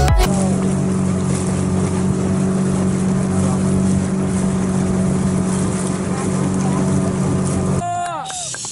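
A small wooden passenger boat's engine running at a steady pace: an even low hum with a rush of water and wind over it, cutting off just before the end.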